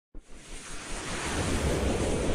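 A rushing, wind-like whoosh sound effect for an animated logo intro. It starts just after the beginning and swells steadily louder.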